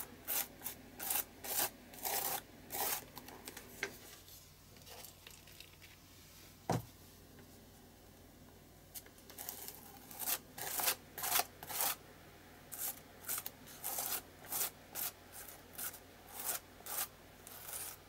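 Palette knife scraping texture paste across a plastic stencil on paper in short sweeping strokes, about two a second. The strokes pause for a few seconds in the middle, with a single click, then resume.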